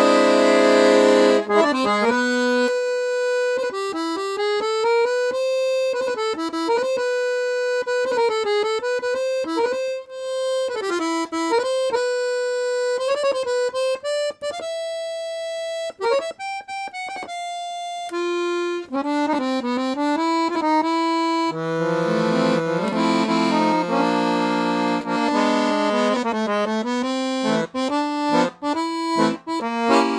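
Programmer piano accordion with 3/4 LMM reeds, played on its treble keyboard: a melody, mostly single notes, with fuller chords and lower notes coming in about two-thirds of the way through.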